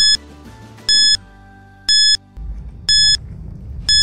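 Quiz countdown timer beeping once a second, five short high-pitched electronic beeps counting down the five-second answer time, over faint background music.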